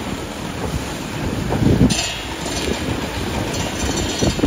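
Wind noise on the microphone over the steady rush of fire hose streams spraying water onto a burning car.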